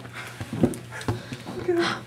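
Short breathy bursts of suppressed laughter and brief vocal sounds from a few people, over a steady low room hum.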